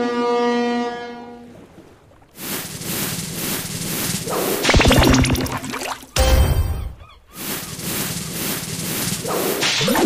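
Online slot game sound effects. A chime with several pitches rings at the start and fades, followed by whooshes and watery noise, with a couple of heavy low hits near the middle. These effects mark an extra-free-spins award.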